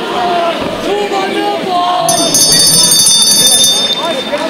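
Boxing end-of-round buzzer: one steady, high-pitched electronic tone sounding about two seconds in for under two seconds, then cutting off sharply, marking the end of the round. Shouting from the crowd and corners over it.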